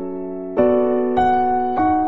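Slow, gentle instrumental piano music: a held chord, then new notes and chords struck about half a second in and roughly every 0.6 seconds after, each left to ring.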